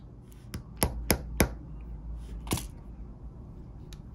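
Small hard plastic parts clicking and tapping as Mini 4WD wheels and tires are handled: four quick clicks within the first second and a half, another about two and a half seconds in, then faint ticks.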